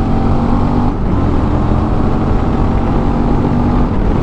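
Suzuki V-Strom 650 XT's 645 cc V-twin engine running steadily at cruising speed on the road, its engine note level apart from a brief dip about a second in, under a heavy low rumble of wind and road noise.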